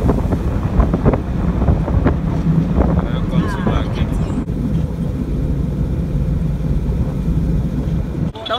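Wind rushing over the microphone above the steady low rumble of a moving vehicle's engine and tyres on the road, heard from the vehicle itself.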